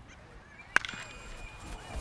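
A single sharp crack of a bat hitting a pitched baseball about a third of the way in, over low ballpark background, followed by a thin steady tone held through the second half.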